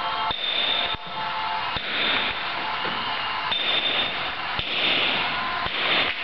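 Hand hammer striking a steel chisel to dress a block of dark stone, about one sharp blow a second, over background music.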